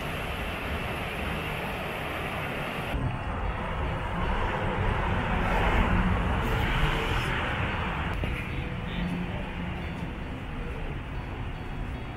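Outdoor city traffic noise, a steady rush that swells to a peak about six seconds in, as of a vehicle passing, then eases off.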